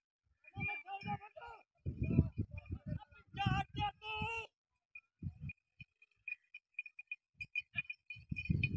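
Voices calling out in short shouts through the first half, then faint, irregular clinking.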